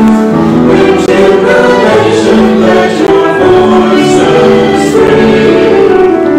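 A church choir of children and adults singing together, with long held notes and clear sibilant consonants on the words.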